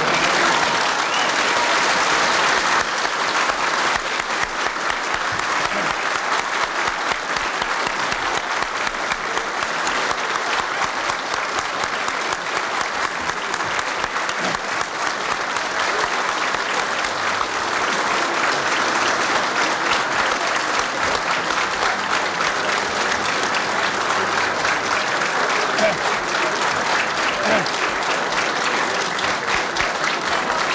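Crowd applauding steadily, with voices talking underneath.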